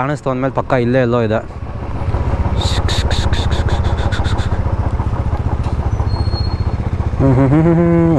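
Royal Enfield 350 single-cylinder motorcycle engine running with an even thump while riding, heard from the bike itself. About a third of the way in a quick run of sharp ticks lasts around two seconds. A man speaks at the start and again near the end.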